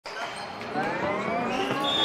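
Logo-intro sound effect: a tone with several overtones rising steadily in pitch, with a high steady ring entering near the end.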